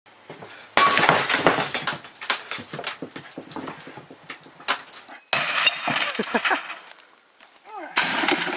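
Cathode-ray-tube television picture tube smashed, the vacuum glass tube imploding: a sudden loud crash of shattering glass about a second in, fragments crackling and tinkling for several seconds after, then a second crash a little past the five-second mark.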